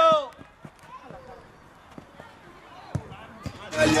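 A man's shout cuts off at the start. Then there are faint voices and a few dull knocks of a football being kicked on artificial turf, the hardest about three seconds in as a shot is struck at goal. Loud music comes in just before the end.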